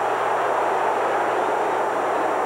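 Football stadium crowd noise, a steady wash of many voices with no single voice standing out, heard through the audio of an old TV game broadcast.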